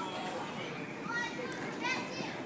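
Background voices in the open air: scattered chatter and several short, high-pitched calls, some rising in pitch, with nobody speaking close up.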